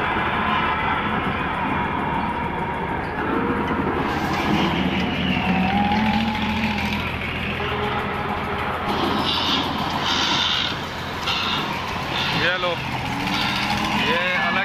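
Busy fairground din: many overlapping crowd voices over a steady mechanical hum from the rides.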